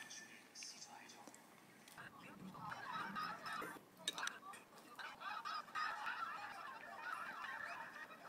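Faint close-up eating sounds: a mouthful of Greek yogurt and raspberry spread from a wooden spoon being eaten, with wet mouth noises starting about two seconds in and a few sharp clicks around the middle.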